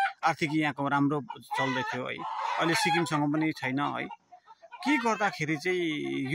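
A man talking, with chickens clucking in the background and one louder fowl call a little after two seconds in.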